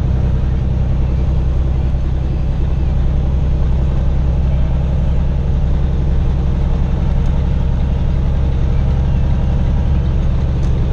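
Semi truck's diesel engine running steadily while driving at highway speed, heard inside the cab as a constant low drone with tyre and road noise.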